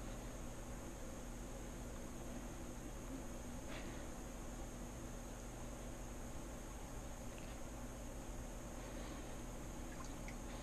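Faint steady hiss with a low, even hum underneath.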